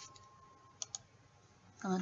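Two quick computer mouse clicks close together, about a second in.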